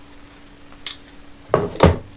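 A faint click about a second in, then two quick knocks close together near the end, from objects being handled and set down on a desk.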